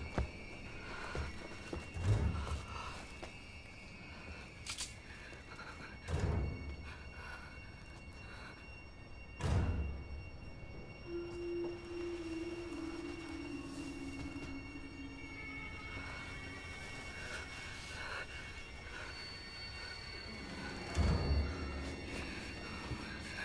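Tense, eerie film score of sustained tones, with a lower tone that steps down in pitch midway. It is broken by four heavy low thuds, about two, six, nine and a half, and twenty-one seconds in.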